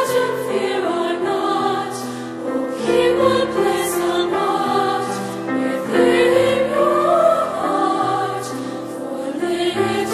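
An all-girls choir singing a slow song in several parts, with long held notes, swelling louder about six seconds in.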